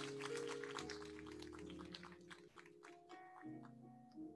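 Soft keyboard music: sustained chords that change a few times, with a patter of light ticks over the first three seconds.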